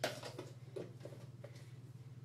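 A light click, then a few faint taps as things are handled on a countertop, over a steady low hum.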